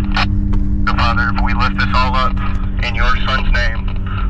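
Voices talking, too indistinct to make out, over a vehicle's engine running with a steady low hum and rumble.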